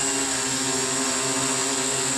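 OFM GQuad-8 octocopter hovering a short way off the ground: its eight electric motors and propellers make a steady hum of several held tones over a rush of air, the craft holding solid.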